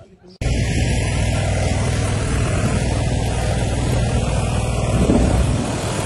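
A boat's motor running steadily and loudly on open floodwater, cutting in suddenly about half a second in.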